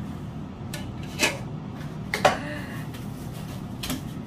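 Glass cookware lids and pans knocking and clinking against each other while being handled in a cardboard box, with a few sharp knocks; the loudest comes a little past halfway and rings briefly. A steady low hum runs underneath.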